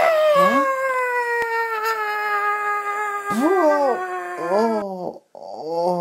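A long wailing cry that starts suddenly and slowly falls in pitch over about five seconds, followed by several short rising-and-falling whoops.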